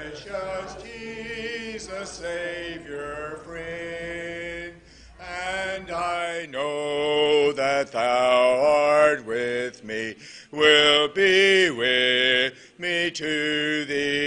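Church congregation singing a hymn a cappella, unaccompanied voices in phrases with short breaks between them, louder from about six seconds in.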